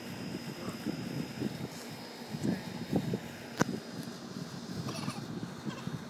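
Outdoor central air-conditioning condenser unit running, a steady mechanical whir with a thin high whine, and a single sharp click about three and a half seconds in.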